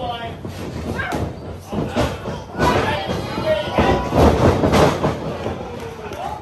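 Wrestlers' feet pounding and thudding on a wrestling ring's canvas and boards as they run and move, with voices mixed in.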